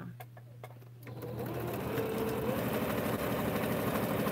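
Electric sewing machine running, stitching a seam through pieced quilt blocks. A few light clicks come first, then the machine starts about a second in and runs steadily.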